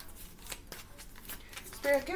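A tarot deck being shuffled by hand: a run of light, irregular card clicks and snaps.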